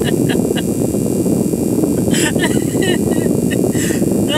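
Steady low rumble inside a vehicle's cab, the sound of the vehicle running, with a few soft short clicks and a brief faint voice sound over it.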